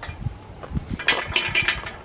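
A metal bar gate being handled and swung, with low thumps in the first second, then a run of sharp metallic clinks and rattles in the second half.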